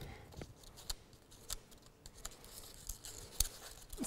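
Faint rustling and crinkling of layered paper as a pinwheel's sails are folded into the centre and held down by hand, with a few soft scattered clicks, the sharpest a little after three seconds in.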